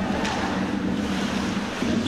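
Steady ice-arena ambience from the game broadcast: an even wash of crowd and rink noise, with no single sound standing out.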